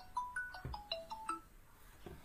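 Mobile phone ringtone: a quick melody of short, plinking notes at shifting pitches, stopping about one and a half seconds in.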